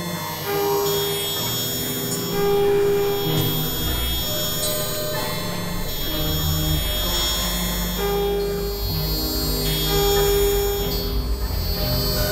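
Experimental electronic synthesizer music: layered held tones and drones, with lower notes changing every second or so and steady high-pitched tones above.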